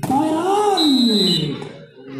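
A man's long drawn-out exclamation, rising then falling in pitch, with a referee's whistle blown once, a short shrill blast about three quarters of a second in, stopping play after the rally.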